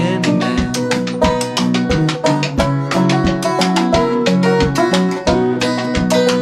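Acoustic blues band playing an instrumental passage with no vocals: guitars and other plucked strings over a steady, even beat of drum and cymbal.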